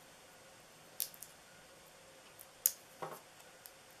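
Small paper craft pieces and mini foam adhesive dots handled and pressed onto a paper box: a few faint, sharp clicks and ticks, one about a second in and a small cluster near three seconds.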